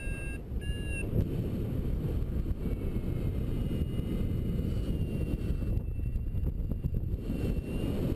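Wind rushing over the microphone of a paraglider in flight, with two short beeps from a flight variometer in the first second and a faint thin steady tone from about three seconds in.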